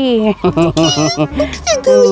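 A domestic cat meowing several times over background music.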